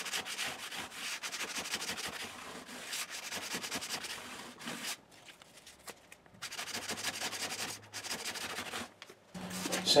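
Cloth-backed 400-grit sandpaper rubbed by hand in quick strokes along the fret ends at the edge of a bass guitar fingerboard, a fret-end edge dress to soften the edges and remove barbs. The rubbing stops for about a second and a half midway, then resumes, and stops again just before the end.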